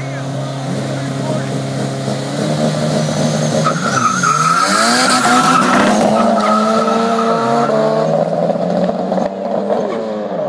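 Two turbocharged street-race cars, an AWD Eagle Talon and an H22-engined turbo Honda Civic EG, idling side by side. About three and a half seconds in they rev and launch hard from a standing start, with tires squealing as they pull away.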